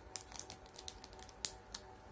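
Fingernails tapping and picking at a plastic sheet of puffy stickers, a string of short light clicks, the loudest about one and a half seconds in.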